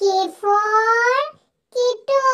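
A high-pitched child's voice making sing-song vocal sounds without clear words. A long phrase rises in pitch, and a second phrase starts near the end.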